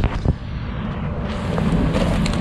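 Low, steady rumble of wind on the microphone, with a couple of short handling knocks near the start.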